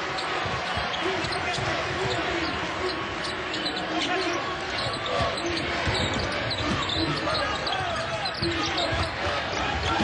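Basketball dribbled on a hardwood court over steady arena crowd noise.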